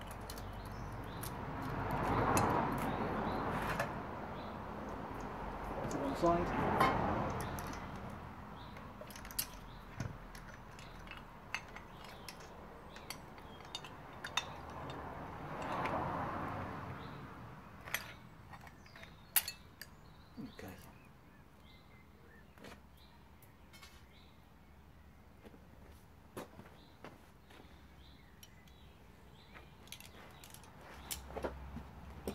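Scattered light metallic clinks and taps as a vintage Homelite VI-955 chainsaw is handled and its guide bar and chain are taken off. A few louder swells of sound come in the first half.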